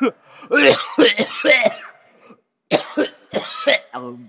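A man with a cold coughing and clearing his throat: a strained, voiced stretch in the first couple of seconds, then several sharp coughs near the end.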